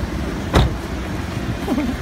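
A taxi's car door shut with a single sharp thud about half a second in, over a steady rumble of street traffic.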